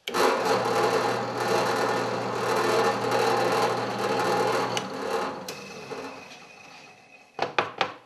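Drill press running with its twist bit boring through plywood. The motor hum stops about five seconds in and the sound dies away, with a few clicks near the end.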